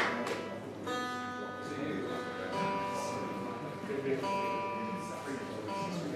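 Electric guitar playing soft single notes and chords, each left to ring and sustain for a second or more.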